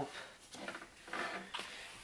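Faint rustling and scraping of a sheet of pizza-box cardboard being shifted and turned on a wooden table, in two soft bouts.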